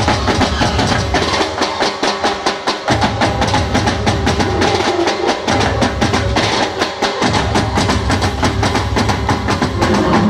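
Live garba band playing an instrumental passage: dhol and drum kit beat a fast, even rhythm. The bass drops out briefly twice, about two seconds in and again near seven seconds.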